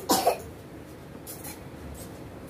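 A person coughing, a quick double cough right at the start.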